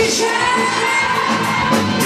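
Live rock band playing with a female lead singer; she sings the last word of a line at the very start, and the band plays on under it.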